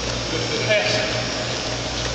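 Steady hiss of gym ambience during a basketball game, with a brief shout from a player just under a second in.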